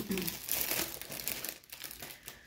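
Small plastic packets of diamond painting drills crinkling and rustling as they are handled and sorted through.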